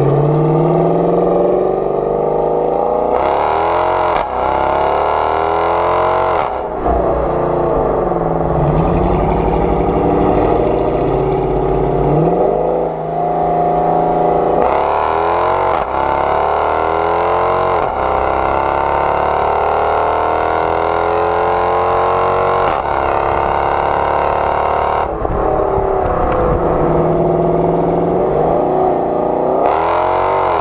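Exhaust of a 2013 Dodge Charger R/T's Hemi V8 running through a Corsa Xtreme exhaust, heard close to the tailpipes while driving. The engine note climbs in pitch under acceleration and drops sharply, over and over, as at gear changes.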